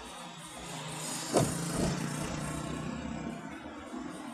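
Car driving in city traffic, heard from inside the vehicle: steady engine and road noise, with a brief sharp pitched blip about a second and a half in and a fainter one just after.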